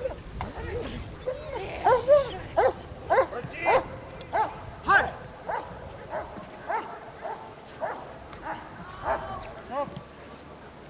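A dog barking over and over in short, high yips, about one every half second, starting a second or so in.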